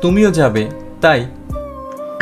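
Spoken dialogue, two short phrases, over soft background music with long held notes.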